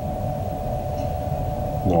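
Steady background hum: a low rumble with a constant mid-pitched tone, like a fan or ventilation unit running in the room.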